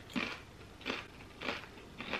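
A Doritos tortilla chip being chewed: three crisp crunches, about two-thirds of a second apart.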